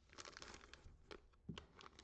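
Faint crinkling and a few light clicks of a hard plastic graded-card slab being handled.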